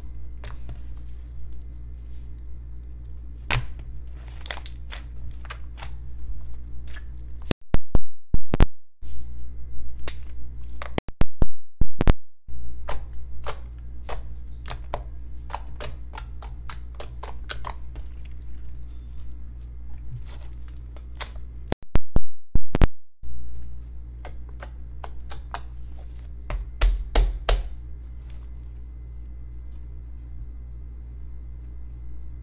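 Glossy slime being poked and squished by fingers: a steady run of wet clicks and pops, with three short, much louder clusters of popping.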